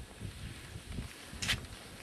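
Faint wind noise on the microphone, with one short high hiss about one and a half seconds in.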